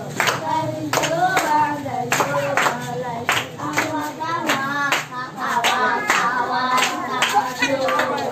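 A group of voices singing while hands clap in a steady rhythm, a little over two claps a second.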